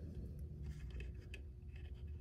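Faint light clicks and rustle of a plastic straw being handled and set across the rim of a plastic cup, over a low room hum.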